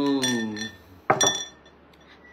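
Glass clinking twice: a light clink with a short ring under a drawn-out hummed vocal sound near the start, then a sharper, louder clink about a second in that rings briefly.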